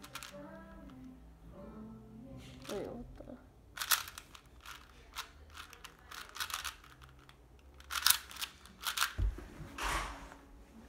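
A plastic 4x4 puzzle cube being turned by hand: quick clusters of sharp clicking layer turns with pauses between them, and a low thump near the end.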